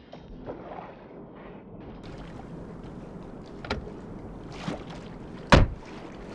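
Car door slammed shut, a single loud thump about five and a half seconds in, preceded by a couple of lighter clicks, over a steady background hiss.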